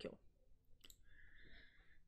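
Near silence broken by a single faint click about a second in, followed by a faint short hiss.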